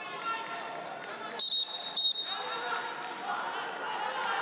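Two short, shrill whistle blasts, about a second and a half in and again half a second later, over the murmur of voices in an arena during a wrestling bout.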